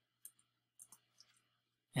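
A few faint, short clicks at a desk, over a faint steady low hum.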